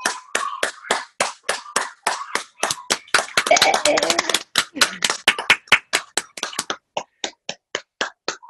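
Hand clapping over a video call: a run of sharp, separate claps, about five a second, that thins out and grows fainter near the end.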